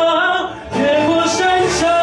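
A man singing a Mandarin ballad into a microphone, holding long notes with a short dip about half a second in before the line picks up again.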